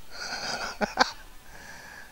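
A man's breathy, wheezy exhale, with two short voiced catches about a second in.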